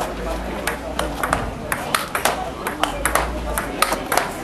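Table tennis ball in a fast rally, struck by bats and bouncing off the table and a Returnboard rebound board: a quick, irregular string of sharp clicks, several a second.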